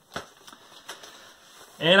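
Vinyl LP jackets being handled: soft rustling and a few light ticks, with a sharper click just after the start.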